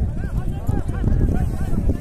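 A large pack of horses and riders jostling at a kupkari game: many overlapping men's shouts and voices over a steady low rumble of hooves on dirt.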